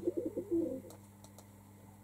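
A pigeon cooing briefly, with a few pitched notes in the first second. Then three faint computer mouse clicks.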